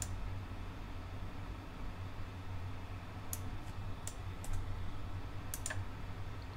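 A few sparse computer mouse clicks, some in quick pairs, made while selecting options in a web page, over a steady low hum.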